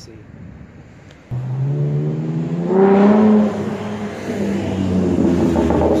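A sports car's engine starts loud and abrupt about a second in, rises in pitch as it accelerates to a peak a couple of seconds later, then eases off and holds steady as the car drives past close by.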